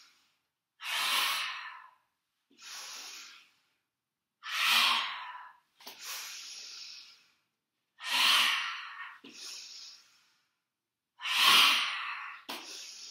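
A woman's active yoga breathing: quieter in-breaths as the arms rise alternate with four loud, forceful out-breaths as the arms sweep down into a forward fold, about every three and a half seconds.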